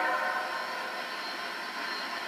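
Approaching CSX diesel freight train heard from a television's speaker: a steady rushing noise, easing slightly in level.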